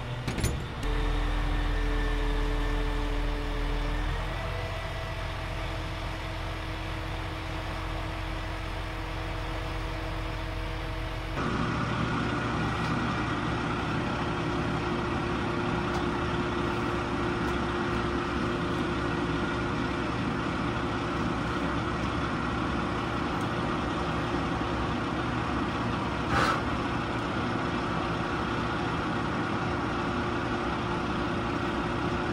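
Crane truck's engine running steadily while the boom lifts a rooftop unit, its pitch stepping up about four seconds in. After a cut, a steady engine drone goes on, with a single sharp clank near the end.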